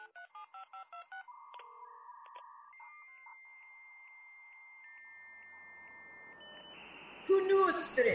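Telephone keypad tones dialing a number in quick succession, followed by steady electronic phone-line tones and a rising hiss. Music comes in loudly about seven seconds in.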